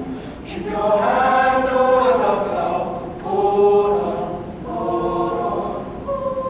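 High-school mixed choir of male and female voices singing in three phrases, each swelling and easing off, with short breaks between them.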